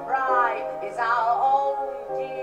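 A woman singing two sustained phrases with vibrato over instrumental accompaniment, the second beginning about a second in.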